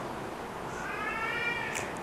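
An animal's call: one high-pitched, drawn-out cry of about a second, near the middle, arching slightly in pitch.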